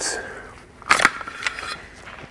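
A sharp plastic click about a second in, then a fainter tick: small parts of an electric precision screwdriver's bit case being handled as a bit is pulled out to be turned the right way round.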